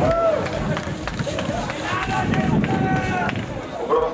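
Voices shouting and calling out over steady outdoor crowd noise, with a short rising-and-falling call at the start and longer held calls after about two seconds.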